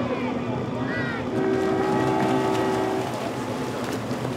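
A horn sounds once, a steady held tone of under two seconds, signalling the start of a deep-water triathlon swim. Behind it runs a steady background of voices and water.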